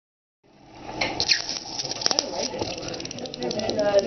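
A metal coin (a US quarter) pressed edge-down into a block of dry ice, vibrating rapidly against it with a fast buzzing rattle and high squeals. The squeals come as the metal is forced in and the escaping carbon dioxide gas pushes hard to squeeze past. The coin conducts heat into the dry ice, which sublimes fast where they touch, and the released gas makes it shiver. The sound starts about half a second in.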